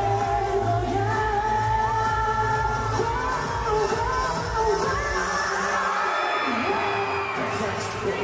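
A male pop group singing live over a pop backing track with a steady bass beat, part of a K-pop song medley. The bass and beat drop out for a moment about six seconds in, then come back.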